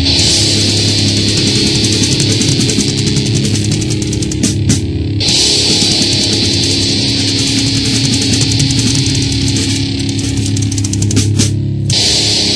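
Heavy metal song with distorted electric guitar, bass and drums, loud and dense throughout. The high cymbal and guitar wash drops out briefly about five seconds in and again near the end, as the song breaks for a moment.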